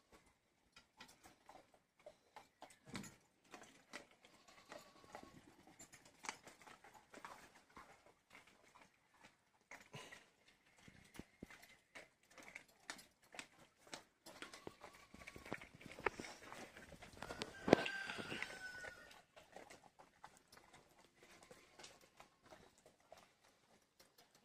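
Dog crunching and gnawing on a bone: a faint, irregular scatter of cracks and clicks, busier and louder about two-thirds of the way in.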